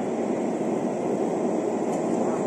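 A 60 W JPT MOPA fiber laser marking machine running as it deep-engraves brass: a steady, even rushing noise with a faint high tone above it.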